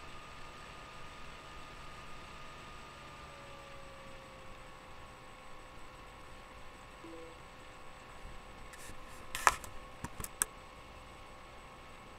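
A faint steady hum whose pitch sinks slightly, then a few sharp clicks or taps, the loudest about nine and a half seconds in.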